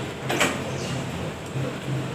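A metal spoon scraping and tapping as cake batter is spooned from a plastic mixing bowl into paper cupcake liners, with one sharp tap about half a second in.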